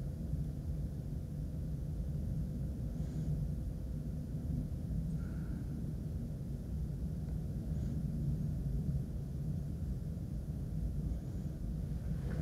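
Steady low rumble of background noise with no speech, with one or two faint short blips near the middle.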